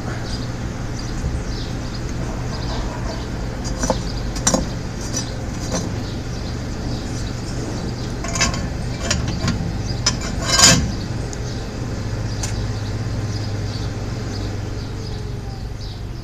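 Forge blower running with a steady low hum while ash and clinkers are scraped out of the forge's fire pot, giving scattered scrapes and metallic clinks, the loudest about ten and a half seconds in. The blower's air is blowing the loose ash out of the pot.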